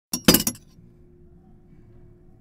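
A foley sound effect: a quick burst of sharp, glassy clinking crashes, a single hit then a tight cluster, all within the first half second, followed by a faint steady hum.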